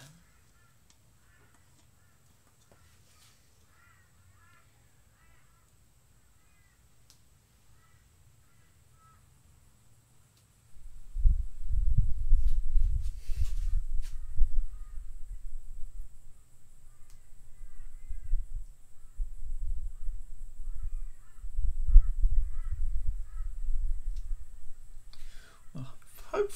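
Faint short bird calls over near silence, then from about ten seconds in a loud, uneven low rumble that swells and fades, drowning them out.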